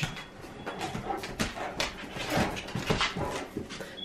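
A dog, with scattered irregular light clicks and a faint high whine near the start.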